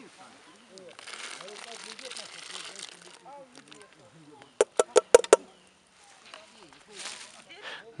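Diced raw potatoes tipped from an enamel bowl into a pot of boiling water, with a rushing splash for about two seconds. A little past the middle comes a quick run of about six sharp knocks as the empty bowl is knocked against the pot.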